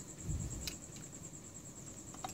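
Faint handling noise of a Honda Tiger motorcycle carburettor being taken apart by hand: a soft low bump and a light click within the first second. A steady high-pitched trill sounds in the background throughout.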